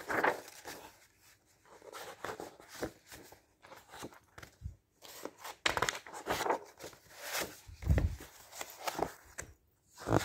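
Daphne's Diary magazine pages being turned by hand: an irregular series of paper swishes and crinkles as sheets are lifted and flipped over, with a soft low thump about eight seconds in.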